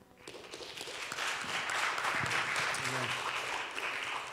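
Congregation applauding, starting about a third of a second in and swelling to a steady clapping, with a few voices mixed in.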